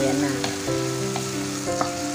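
Thick onion-tomato curry masala frying in oil in a pan with no water added, sizzling steadily as it is stirred, with a few short clicks of the spoon against the pan. The tomatoes have cooked down until the oil separates, so the gravy is ready.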